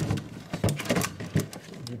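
Glass jars and food containers knocking and clinking as they are handled on a fridge shelf: a handful of sharp clicks over a couple of seconds.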